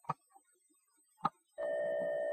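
Two clicks of a cassette being loaded into a portable cassette player, then about a second and a half in, a steady tone starts as the player plays back a computer program cassette: the sound of the binary data recorded on the tape.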